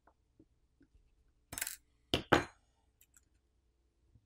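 A small metal piece clinking down on a hard work surface: a short rustle about one and a half seconds in, then two quick, bright clinks.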